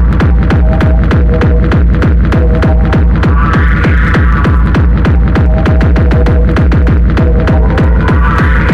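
Hard electronic drum and bass music in the darkstep style: fast, dense drum hits over a heavy, loud bass. A higher synth phrase comes back about every four to five seconds.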